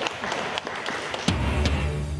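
Scattered clapping with sharp clicks, then about 1.3 s in a deep, steady bass note of a news-bulletin transition sting starts and holds.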